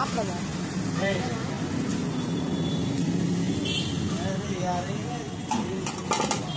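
Steady low rumble of a running motor-vehicle engine, under indistinct voices, with a few sharp metallic clinks in the second half.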